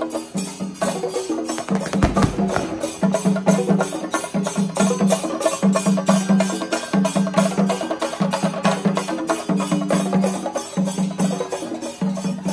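A troupe of stick-beaten barrel drums playing together in a fast, steady rhythm, with a low held tone sounding in repeated phrases underneath. One heavy thump stands out about two seconds in.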